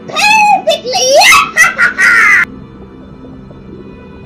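A cartoon witch's shrill cackle, loud and in several wavering bursts, cutting off suddenly about two and a half seconds in, over background music.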